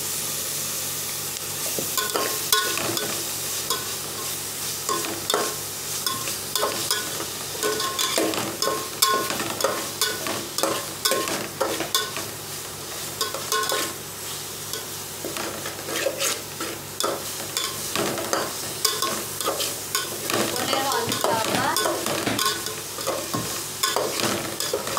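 Sliced onions and green chillies sizzling in hot oil in a metal pot, with a metal spatula scraping and clinking against the pot in many irregular stirring strokes.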